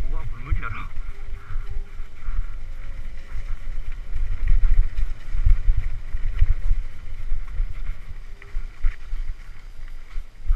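Wind buffeting the microphone of a helmet-mounted camera, mixed with the jolting rattle of a mountain bike on a rough dirt trail: a steady low rumble broken by many small knocks, heaviest in the middle.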